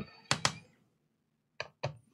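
Short clicks of a screwdriver being handled against a laptop's plastic bottom cover. They come in two quick pairs, one near the start and one near the end, about a second apart.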